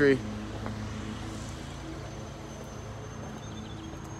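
Steady low hum of an idling vehicle engine, with a faint thin high tone starting about two seconds in.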